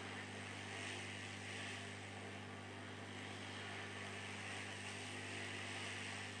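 Hot air rework station blowing a steady, soft hiss of hot air onto a phone motherboard's shielding can to melt its solder, with a low electrical hum underneath.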